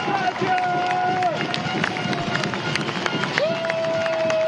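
Stadium crowd noise just after a touchdown, with scattered sharp claps or bangs. Two long steady tones stand out over it, the first about a second long and the second about a second and a half, starting near the end.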